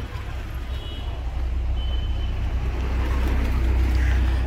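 Low, steady vehicle rumble that grows louder over the few seconds.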